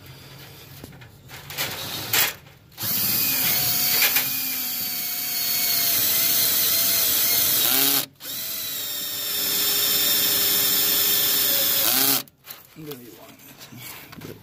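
Cordless drill boring a hole through the steering column's slip joint: the motor whine starts about three seconds in, runs steadily, dips for a moment about eight seconds in, then runs again and stops about two seconds before the end.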